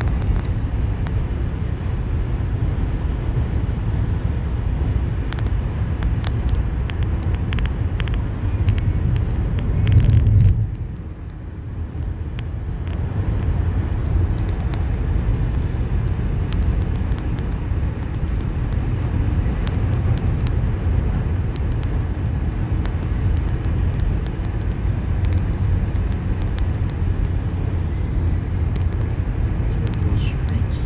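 Road noise inside a car driving at highway speed: a steady low rumble of tyres and engine through the cabin. It swells briefly about ten seconds in, then drops for a couple of seconds before building back.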